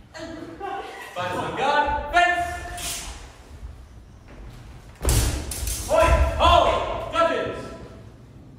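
Shouts and exclamations from people in a large hall, with heavy thuds of fencers' feet on a wooden floor about two seconds in and again about five seconds in.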